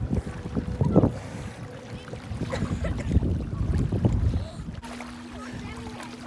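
Gusty wind rumbling on the microphone and water sloshing around a person wading in a lake, surging about a second in and again in the middle, with faint voices.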